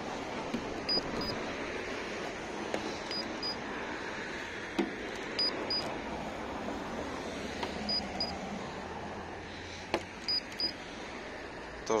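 Handheld paint thickness gauge giving a pair of short high beeps each time it takes a reading on the car's body panel, five pairs about two seconds apart, over a steady background hiss. A few sharp clicks come from the probe touching the panel.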